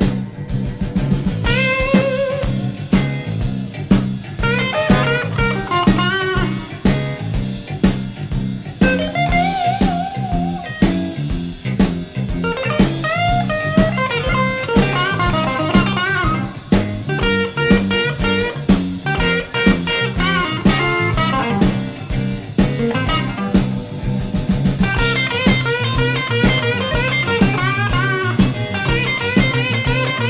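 Electric blues band in an instrumental break: a lead electric guitar solos with bent, sliding notes over drums and a bass line.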